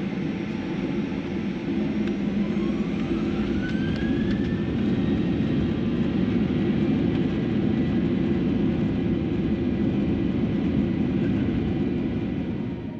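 Boeing 737-800 CFM56-7B turbofan engines spooling up for takeoff, heard inside the cabin over the wing: a steady, loud roar with a whine rising in pitch over the first few seconds as thrust builds and the takeoff roll begins.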